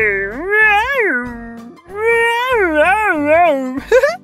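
A man imitating a stegosaurus call with his voice: two long, wavering calls that swoop up and down in pitch, the first ending about two seconds in and the second just before the end.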